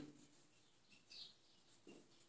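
Near silence, with a faint short squeak of a marker writing on a whiteboard about a second in.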